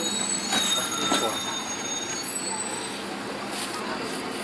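Busy city-street background: a steady hum of noise with several thin, high-pitched squealing tones held over it, and passers-by talking indistinctly.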